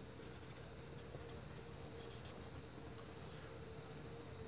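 Faint sound of handwriting: short scratchy pen strokes, thickest in the first half.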